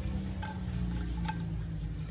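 Kitchen paper rubbing over an aluminium pressure-cooker lid during cleaning, with a few light ticks, over a steady low hum.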